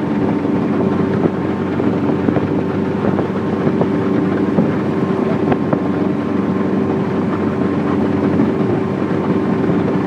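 Chaparral speedboat's engine running steadily while under way, a constant hum with wind buffeting the microphone.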